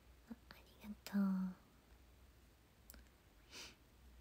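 A woman's soft, wordless vocal sounds: a few short hums about a second in, then a breathy whisper-like exhale near the end, with a faint click in between.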